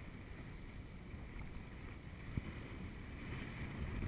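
Low, steady rumble of wind and choppy water against a camera held at the water's surface, with one faint knock a little past halfway.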